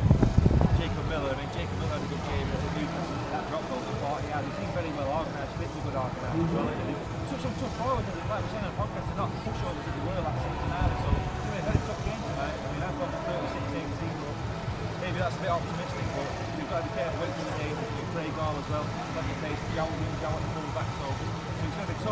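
A man talking continuously over a steady low background rumble, with a brief loud low thump in the first second.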